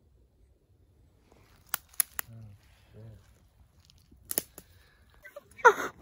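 A few sharp clicks, three close together about two seconds in and a couple more past four seconds, with faint low murmured speech between them. A man's excited voice breaks in near the end.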